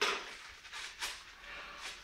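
Newspaper crinkling and tearing in a few short bursts as it is pulled off a wrapped spoon.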